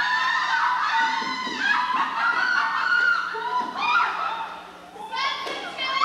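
Several high voices singing together in a stage musical, held notes bending in pitch, briefly dropping away about five seconds in. A faint steady low tone sits underneath.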